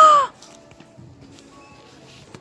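A woman's short, loud squealing exclamation, its pitch rising and falling in one arc, over within the first moment. Then only faint background noise.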